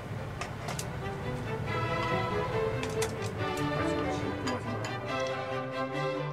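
Background music with held notes coming in about two seconds in, over a low steady hum and a few sharp clicks.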